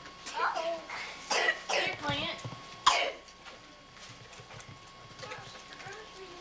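Short vocal sounds and babble from a young child, a few brief cries in the first three seconds, the sharpest about three seconds in, then quieter.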